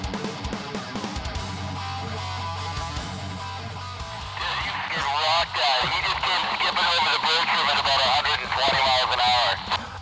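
Guitar soundtrack music. From about four seconds in, loud excited hooting and yelling voices come in over it and carry on to the end.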